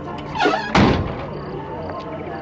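A vintage car's door swung and shut with one heavy thunk just before a second in, over a background music score.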